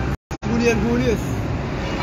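A man talking over the steady hum of street traffic. The sound cuts out to dead silence twice, briefly, near the start.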